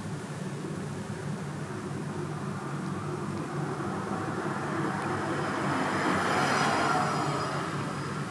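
A vehicle passing by, heard over a steady low hum. Its noise swells slowly, peaks about six to seven seconds in, and begins to fade near the end.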